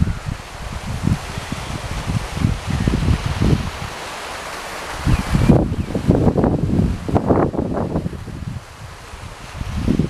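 Wind buffeting the microphone in irregular gusts, low rumbles over a steady outdoor hiss.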